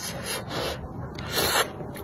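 Three short hissing rushes of air through pursed lips while eating spicy noodles, the loudest about one and a half seconds in: slurping, or blowing on the hot food.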